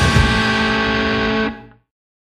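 A rock band's closing chord: distorted electric guitar and bass held ringing after a last drum hit just after the start, then stopping abruptly about one and a half seconds in.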